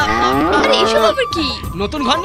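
A cow mooing: one long call over about the first second, then shorter broken calls.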